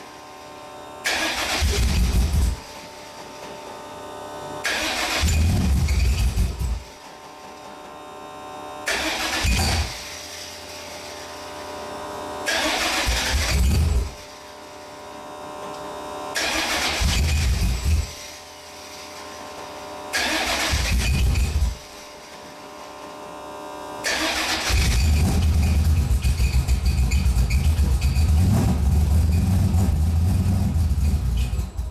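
Carbureted V8 in a Mazda Miata trying to start cold: it fires and runs for a second or two, then dies, about six times over. About 24 seconds in it catches and keeps running. The hard start comes with the Holley carburetor's air bleeds set lean at one turn out.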